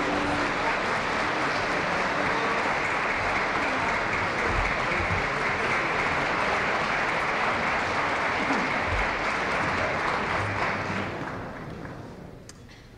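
Concert audience applauding steadily, then dying away over the last second or so.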